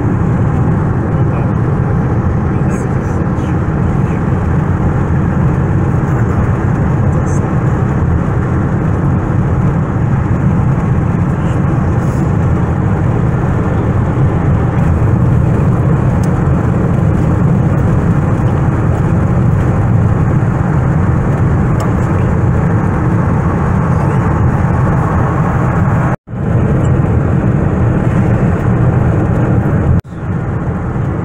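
Steady road and engine noise inside a car's cabin at highway speed, a low rumble with little above it. A little before the end the sound cuts out suddenly for an instant and resumes.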